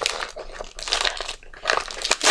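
Cellophane gift wrapping crinkling in irregular crackles as it is pulled and crumpled off a wrapped present.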